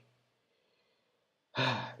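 A man's voice: near silence for about a second and a half, then a short voiced sigh that fades out.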